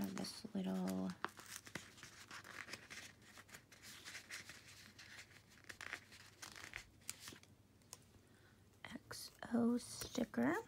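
Paper sticker sheets rustling and stickers being peeled from their backing, with scattered light clicks and scrapes. A short hummed or murmured voice comes about a second in and again near the end.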